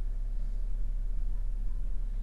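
Steady low hum with no distinct events: background room tone inside a parked car.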